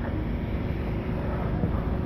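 Steady low rumbling background noise of an open-air street scene, with no distinct events and a faint steady hum.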